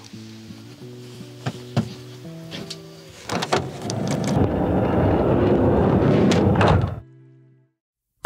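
Sliding side door of a Citroën Jumper van being pulled shut: a rush of noise that builds over about three seconds and ends in a thud. Background music plays throughout.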